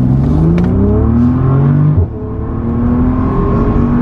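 Bentley Continental GT's 635 hp W12 engine under full-throttle acceleration, heard from inside the cabin: the revs climb steadily, drop sharply on an upshift about two seconds in, then climb again in the next gear.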